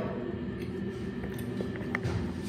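A person chewing a bite of soft fresh cheese, faint, over a steady low room hum, with a few small clicks.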